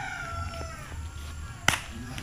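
A rooster crowing, its long held call tailing off slightly falling in the first second. About a second and a half later comes a single sharp crack, the loudest sound.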